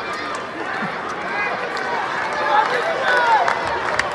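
Arena crowd at a live wrestling match, a steady hubbub of many voices with scattered shouts, one falling call about three seconds in.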